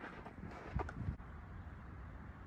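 Quiet open-air ambience: a steady low wind rumble on the microphone, with two faint ticks about a second in.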